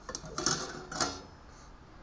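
Glass globe of a Coleman 220C pressure lantern being lifted off its metal frame: a few sharp clinks and knocks of glass against metal in the first second or so.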